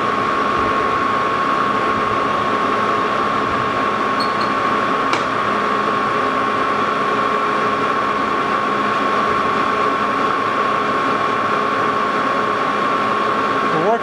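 Lodge & Shipley engine lathe running at low speed while a carbide-insert boring bar takes a light, dry cut in the rough cast-iron hub of a flat belt pulley: a steady machine hum with a constant high whine, and one brief tick about five seconds in.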